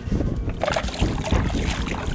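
Wind buffeting the microphone over water lapping and splashing at the side of a small boat, as a fish is let go into the water.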